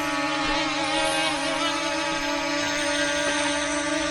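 F007 Pro mini quadcopter hovering, its motors and propellers making a steady buzzing whine that holds one pitch.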